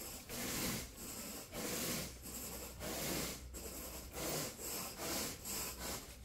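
A long-handled carpet grooming rake dragged through thick carpet pile in short repeated strokes, a scratchy brushing about once or twice a second.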